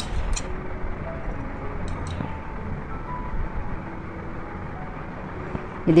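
Steady low background noise with faint, scattered short tones, like distant music or traffic, and a few light clicks near the start and about two seconds in.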